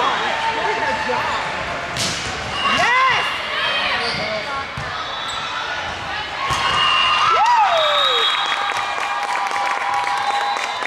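Indoor volleyball rally in a large, echoing gym: sharp hits of the ball, the strongest about two seconds in, and sneakers squeaking on the court in short rising-and-falling squeals, with players' voices.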